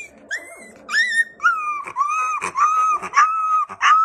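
Very young husky puppy crying in a string of about seven short, high-pitched whining squeals, each arching briefly in pitch.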